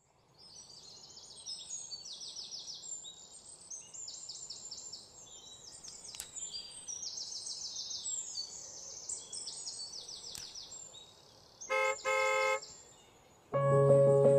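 Forest ambience of birds giving short, high, rapid trilling calls, one after another. About twelve seconds in, a car horn sounds twice in quick succession, and music starts just before the end.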